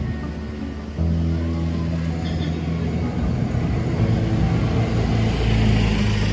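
Road traffic on a city street, with a heavy vehicle's engine running close by and a swell of traffic noise near the end.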